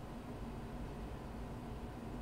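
Quiet room tone: a low, steady hiss with a faint hum and no distinct events.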